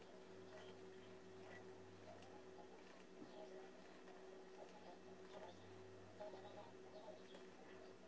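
Near silence: a faint steady hum, with a few soft scattered ticks from knitting needles working stitches.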